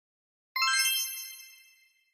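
A single high, bright chime (a 'ding' sound effect) struck about half a second in, ringing and fading away over about a second.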